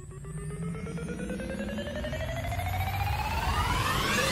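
Music: a rising build-up, several tones sweeping steadily upward in pitch and growing louder, leading into the start of a song.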